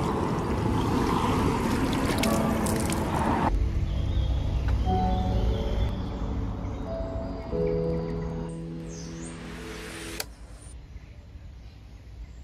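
Water running from a public refill tap into a bottle, a steady splashing hiss that cuts off abruptly about three and a half seconds in. After that, background music with held notes.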